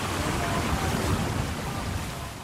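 Steady rushing noise of wind and water, heavy in the low rumble, with a few faint short tonal calls in the background.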